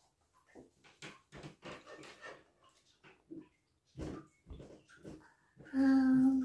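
A toddler eating from a spoon: repeated short wet chewing and lip-smacking sounds, then near the end a loud hummed "mmm" with his mouth full.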